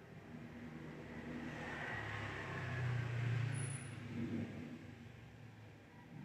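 The closing swell of a radio station ID jingle: a low, sustained rumble that builds to a peak about three seconds in and then fades away.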